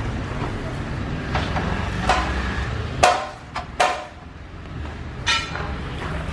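Large vitrified tile slabs being handled, giving a few sharp knocks and clacks as they strike each other and the stack, the two loudest near the middle with a short ring. A steady low rumble runs underneath.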